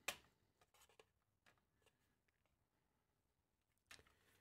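Near silence, with one sharp click at the very start and a few faint ticks about a second in, from handling the charger's circuit board in its plastic case.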